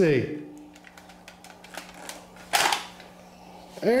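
Small plastic clicks as the battery pack is unlatched and worked off a Kobalt toy reciprocating saw, with a louder scraping snap about two and a half seconds in as it comes free.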